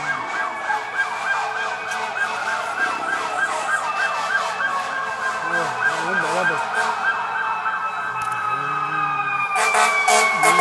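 Two emergency vehicle sirens sounding together: one in a fast repeating yelp, the other in a slow wail that falls away near the end.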